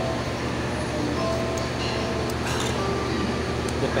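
Restaurant background: a steady low hum with traffic-like noise and faint music, and a few light clicks.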